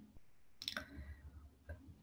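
A quiet pause holding a few faint short clicks, spread over the first second and one more near the end.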